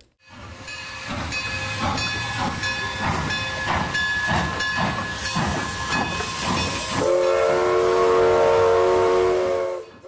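Steam locomotive chuffing at an even beat, a little under two chuffs a second, then a long steam whistle blast of several notes sounding together from about seven seconds in, cut off just before the end.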